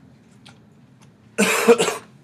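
A man coughs twice in quick succession, loud and close to the microphone, about one and a half seconds in.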